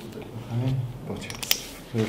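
Paper and pen handling at a table during document signing: rustling sheets and a single sharp click about one and a half seconds in, under low murmured voices.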